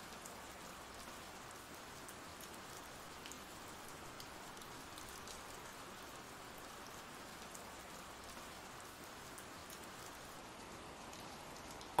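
Steady, faint rain sound effect: an even hiss of rainfall with light scattered drop ticks.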